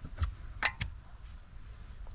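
Three short clicks, the last two close together, as a laser level is handled on its magnetic clip at the steel sawmill carriage.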